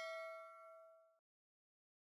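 Notification-bell ding sound effect ringing out: a metallic tone with several pitches fading, the highest dying first, until it cuts off a little over a second in.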